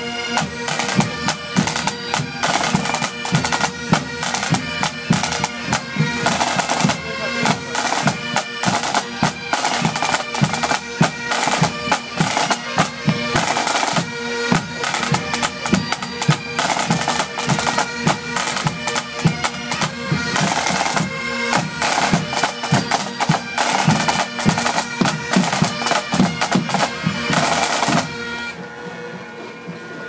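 Highland pipe band playing: bagpipes with steady drones over rapid snare-drum strokes and tenor drums. The music stops about two seconds before the end.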